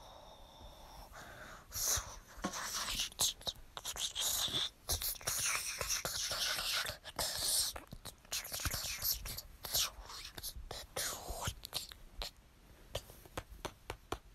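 A person whispering in uneven breathy bursts from about two seconds in, trailing off near the end.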